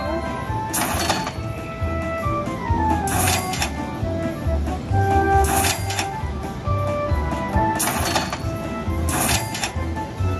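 Jackpot Carnival Buffalo slot machine's bonus-round music: a steady low beat under a melody of held notes, with about five short bursts of sound effects as the prize values on the grid are boosted.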